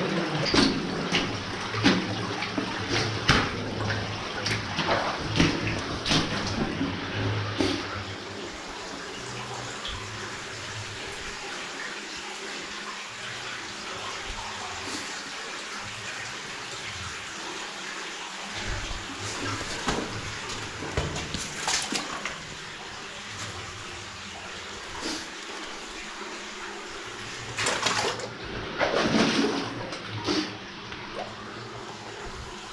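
Footsteps splashing through shallow water on the floor of an old mine tunnel, over a steady sound of running water. The steps come about once a second for the first eight seconds, then fall away, with a few more splashes later and a louder cluster near the end.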